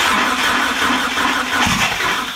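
Starter motor cranking the Mitsubishi Lancer Evolution's turbocharged 4G63 four-cylinder steadily without the engine catching. The owner puts the no-start down to the cam and crank trigger wheel setup.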